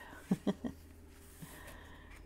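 A woman's brief, soft laugh near the start, followed by a quieter stretch with a steady low hum and the faint rustle of a coloring-book page being turned.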